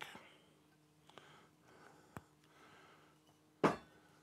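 Whisky poured from a glass bottle into a tasting glass: a faint trickle, then a small click about two seconds in. Near the end the glass bottle is set down on the wooden bar top with a short, ringing knock, the loudest sound.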